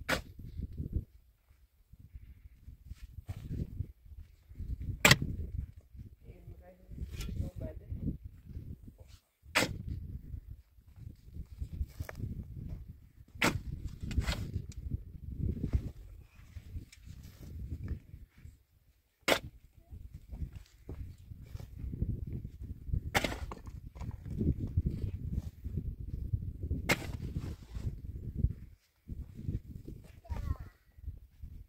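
Digging in hard, stony soil: a metal digging blade strikes the ground with a sharp hit every four or five seconds, about seven times, with low scraping and shifting of earth between the strikes.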